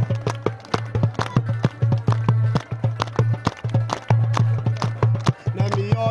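Frame drum beaten in a fast, galloping rhythm, about four to five strokes a second, with a crowd clapping along over a steady low hum. A pitched melody comes in near the end.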